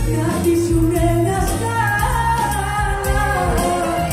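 Live Greek popular music: a woman sings through the microphone over an amplified band with bouzouki and a steady bass beat.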